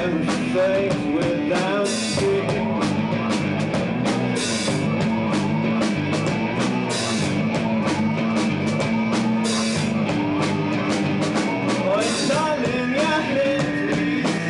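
Live rock band playing: electric guitar and a drum kit keeping a steady beat, with a cymbal accent about every two and a half seconds, and a singing voice over the top.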